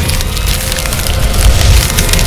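Crumbling-wall sound effect: dense crackling and splintering over a deep low rumble.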